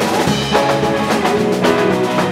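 Live rock band playing: electric guitars, electric bass and a drum kit, with drum hits falling at a steady beat.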